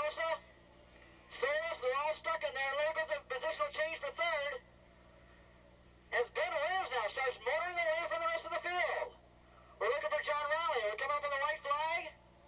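Speech only: a race commentator's voice, thin and band-limited as if through a telephone or radio, talking in four stretches with short pauses between.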